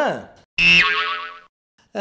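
Comedy sound effects dubbed over the scene: a pitched sound slides steeply down, then a high, bright ringing tone drops in pitch once and fades over about a second.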